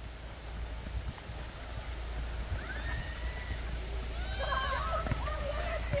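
Steady hiss of heavy rain pouring down, growing slightly louder, with faint distant shouts of voices around the middle and near the end.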